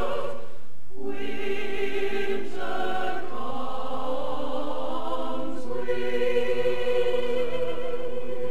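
Mixed-voice choir singing sustained chords with vibrato, moving to a new chord three times.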